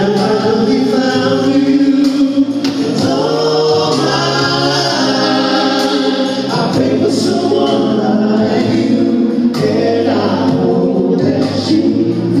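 A male vocal group singing a song in several-part harmony through a concert sound system, heard from the audience.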